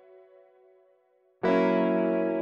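SampleTron 2's 'Electric Guitar Valve MkII' tape-sample patch played from the keyboard. A held chord fades away to silence, then a new chord starts sharply about one and a half seconds in and sustains.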